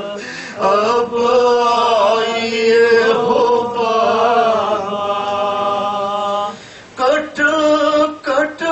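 A man chanting an Urdu noha (lament) into a microphone in long, drawn-out, wavering notes, pausing briefly about half a second in and again near the end.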